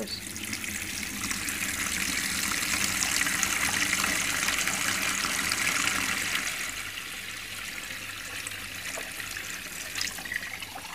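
Water tap running in a steady stream, louder for the first few seconds and softer from about two-thirds of the way through.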